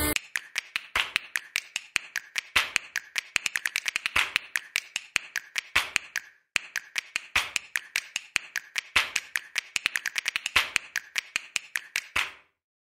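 Rapid, irregular sharp ticks, several a second, as a CNC router's 4 mm single-flute end mill slots aluminium plate at 18,000 rpm and throws chips. There is a short break about six seconds in.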